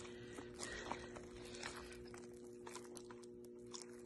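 Faint, scattered wet clicks and squelches of hands working in the flesh of a skinned game carcass as the wound is pulled apart, over a steady low electrical hum.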